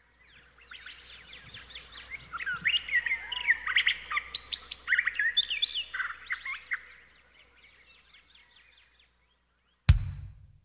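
Recorded birdsong: many birds chirping in quick rising and falling calls, swelling in the middle and thinning out toward the end. A sudden loud low hit comes right at the end, as the song's music begins.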